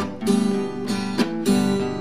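Acoustic guitar strumming chords in a steady rhythm, accompanying a song between sung lines.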